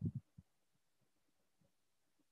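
Near silence: a few faint low thumps in the first half second, then only faint room tone.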